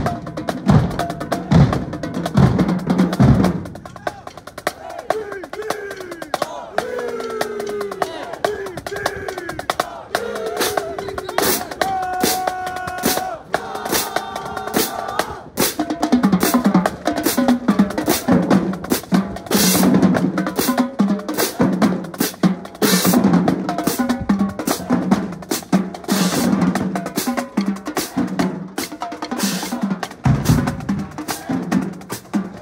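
Marching drumline of snare drums, tenor drums and bass drums playing a marching cadence. The drums drop back about four seconds in, with voices heard over softer playing, and the full cadence with heavy bass drum strokes returns about sixteen seconds in.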